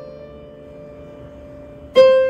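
Electronic keyboard playing a piano sound: a note struck just before holds and slowly fades, and a new note is struck at the very end.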